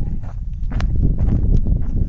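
Footsteps on dry, stony ground, a few sharp steps over a steady low outdoor rumble.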